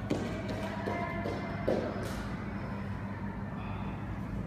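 Bare feet thudding and slapping on a wooden studio floor as a dancer runs and drops to the ground, a few knocks in the first two seconds with the heaviest thump a little under two seconds in. Faint music and a steady low hum run underneath.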